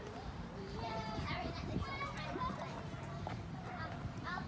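Indistinct chatter of children's voices, with no clear words.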